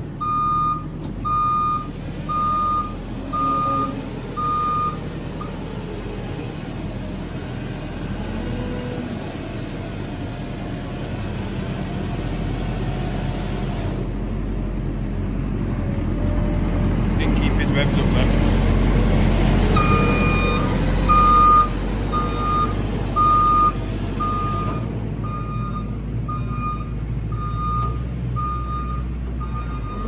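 A JCB telehandler's engine runs steadily while its straw bedding machine blows straw, growing louder through the middle as it works harder. A reversing alarm beeps in a steady series of about one beep every three-quarters of a second at the start, stops for a while, then starts again about two-thirds of the way through.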